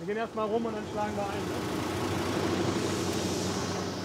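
A lorry passing close by: engine hum and tyre noise swell for a couple of seconds and then ease off. A man's voice is heard faintly at the start.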